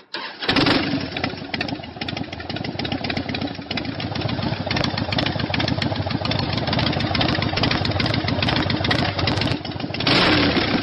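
A Harley-Davidson motorcycle engine starting up about half a second in and then running steadily at idle.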